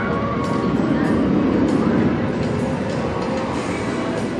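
B&M hyper coaster train running along its steel track, the rush swelling to a peak about one to two seconds in and then easing off.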